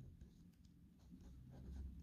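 Faint scratching of a felt-tip marker writing on paper in short strokes.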